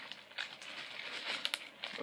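Plastic packaging of soft-plastic fishing baits rustling and crinkling as it is handled, with a few sharp clicks.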